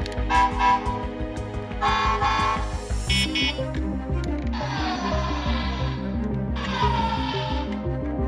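Electronic sound effects from a Go-onger Go-Phone transformation cellphone toy (G-50NP) as its buttons are pressed: several short bursts of pitched electronic sound, some with falling tones. Background music plays underneath.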